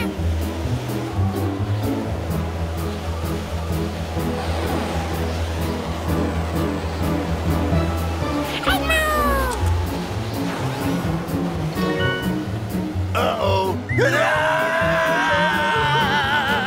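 Cartoon background music with a steady bass and beat. A short falling squeal comes about nine seconds in, and a long wavering wail fills the last few seconds.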